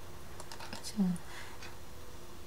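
A few faint, irregular clicks of a computer keyboard and mouse, with a short murmur of a voice about a second in.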